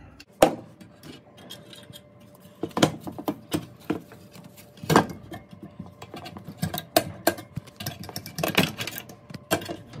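Irregular clicks, taps and rattles of wires, plastic connectors and the plastic fluid tank being handled and pulled loose inside a fog machine's sheet-metal case. The sharpest knock comes about half a second in, with further knocks near three, five and eight and a half seconds.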